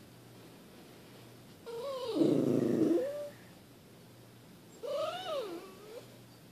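A schnauzer whining twice, as the crying she does whenever her owner leaves for work. The first whine is longer, about a second and a half in length, with a rougher, lower middle; the second, near the end, is shorter and rises and then falls in pitch.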